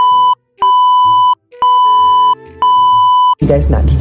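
Test-card tone sound effect: a steady, high, pure beep repeating about once a second, each beep lasting under a second, with faint music beneath. Speech cuts in near the end.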